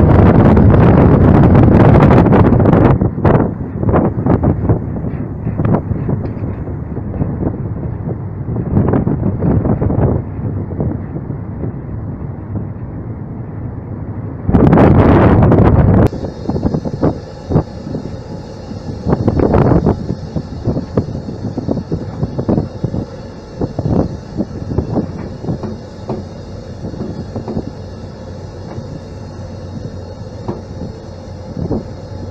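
Wind buffeting the microphone on a ship's deck, loudest for the first couple of seconds and again briefly near the middle, with irregular knocks in between. From about halfway, a ship's steel hull pushes through broken sea ice: a steady rumble with floes knocking and grinding along the side.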